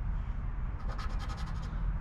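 A round chip scratching the latex coating off a paper lottery scratch-off ticket, with a quick run of rapid strokes about a second in.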